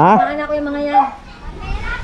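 A high-pitched voice calling out with a long, held vowel, then breaking off about a second in.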